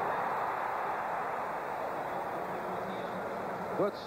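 Football stadium crowd cheering during a running play, a steady wash of crowd noise heard through the TV broadcast audio, easing slightly toward the end.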